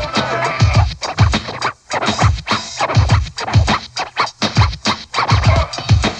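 Old-school hip hop instrumental break: a steady drum beat with DJ turntable scratching cut over it, the record scratches clustered near the start and again near the end.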